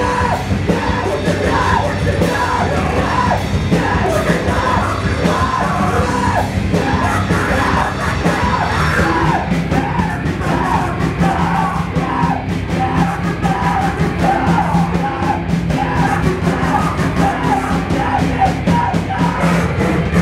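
Hardcore punk band playing live: loud electric guitars under shouted vocals, continuous throughout.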